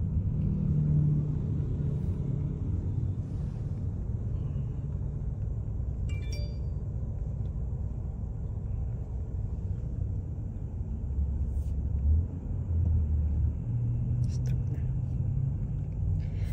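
Low, steady rumble of a car's engine and tyres heard from inside the cabin while driving slowly, with a few faint clicks.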